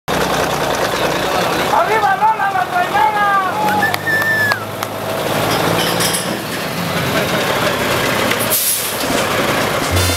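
Semi-truck diesel engine running steadily at low speed, with a high, wavering voice-like call over it from about two seconds in to past four seconds, and a brief hiss near the end.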